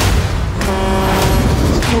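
Edited trailer soundtrack: a loud hit, then a held, steady tone for about a second over a deep rumble.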